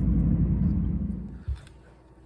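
Low rumble of motor vehicle engines from road traffic. It fades away about a second and a half in, with a single short thump as it ends.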